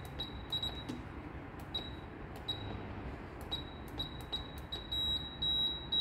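High-pitched electronic beeping from the building's glass entrance door system: short beeps at uneven spacing, then a longer, faster-pulsing run of beeps from about halfway through.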